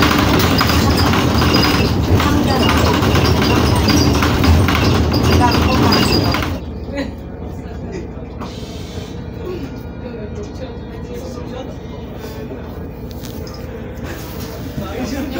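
City bus interior noise: engine and road noise with rattling, loud at first, then dropping suddenly to a much quieter background about six and a half seconds in.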